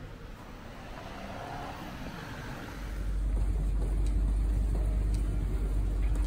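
A car passing on a quiet street, its tyre noise swelling and fading over the first couple of seconds. About three seconds in, a louder steady low rumble takes over.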